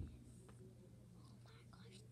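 A quiet room with a steady low hum. There is a soft thump right at the start, then a few faint clicks of plastic checker pieces being moved on the board.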